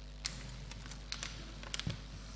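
Faint, scattered light clicks and taps, a few close together near the end, with one soft thump just before the end: paper sheets being handled and set down on a wooden desk close to the microphone.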